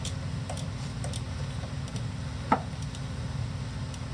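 A few light clicks and taps, with one sharper tick about two and a half seconds in, over a steady low hum.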